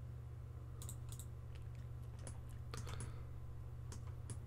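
Computer keyboard keys and mouse buttons clicking, about half a dozen separate clicks, over a steady low electrical hum.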